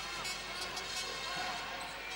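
Basketball being dribbled on a hardwood court over steady arena crowd noise, with a few scattered short knocks.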